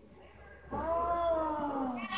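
A person's voice in one long drawn-out call, starting about two-thirds of a second in and sliding down in pitch toward the end.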